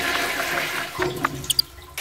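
Rushing water noise, like a toilet flushing, that fades away over about a second and a half, with a few faint high chirps near the end.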